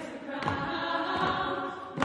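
Women's vocal ensemble singing a cappella, holding sustained chords in treble voices.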